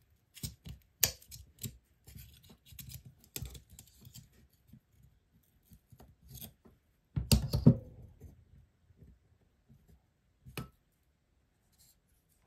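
Small metal-on-metal scraping and clicking as a knife blade is levered under a folding knife's handle scale to pry it free, with a louder knock and clatter about seven seconds in and a sharp click near the end.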